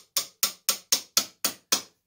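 Small hammer striking the top of a steel rod set upright in a wooden block: a quick, even run of sharp taps, about four a second, each ringing briefly. The strikes stop shortly before the end.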